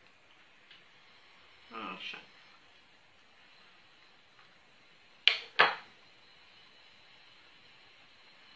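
Two sharp clinks of a metal spoon against a ceramic bowl, about a third of a second apart, about five seconds in.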